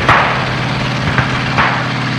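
A sudden loud burst of noise, then a steady rumble with a low hum and a couple of sharp knocks, from the sound effects of archival war film.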